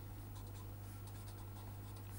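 Marker pen writing on paper: faint scratches of pen strokes, over a low steady hum.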